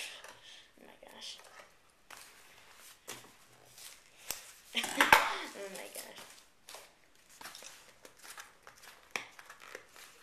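Scissors snipping and prying at a plastic-wrapped cardboard box of trading cards, with irregular clicks and crinkling and a louder crackle of tearing packaging about five seconds in; the packaging is hard to open.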